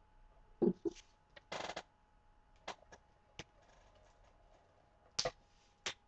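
Pink handheld glue tape runner being run along the edge of a sheet of paper: short rasps and a series of separate clicks, along with paper being handled and pressed down.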